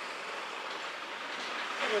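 Steady rushing noise of a truck moving close by, engine and tyres, growing a little louder near the end.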